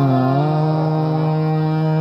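Hindustani classical male vocal in Raag Shiv Abhogi: the voice slides down in pitch, then settles into one long held note.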